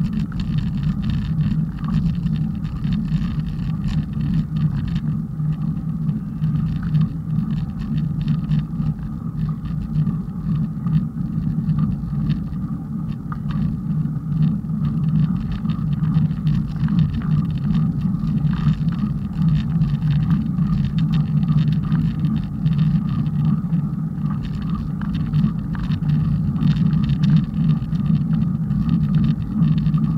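Steady low rumble of wind and road noise on the microphone of a moving bicycle, unbroken and loud throughout.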